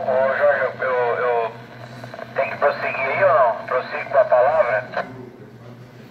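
A voice received over a VHF amateur radio transceiver and heard from its speaker, thin and cut off in the highs, talking in two stretches with a short pause between and stopping about a second before the end. A steady low hum runs underneath.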